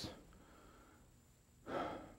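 A man's short audible breath into a microphone about one and a half seconds in, after a stretch of near-silent room tone.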